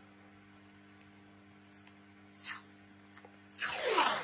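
Black craft tape pulled off its roll near the end, a short rasping tear lasting about half a second. Before it, mostly quiet with a faint brief rustle.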